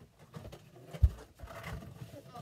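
A single dull, low thump about halfway through, among fainter small knocks and handling sounds.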